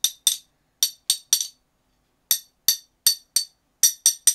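Steel parts of a Taparia socket set, a socket extension and T-bar handle, tapped against each other: about ten sharp metallic clinks with a high ring, in two groups of five with a short pause between. The clear ring is offered as the sign of good-quality steel that will not easily bend or break.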